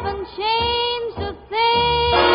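Background song: a high voice singing long held notes, with two short breaks between phrases.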